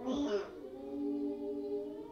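Music with voices singing held notes, choir-like, after a short burst of voice at the start.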